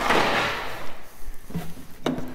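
Scraping, rustling handling noise on a plastic fermentation barrel and its lid, starting sharply and fading over about a second.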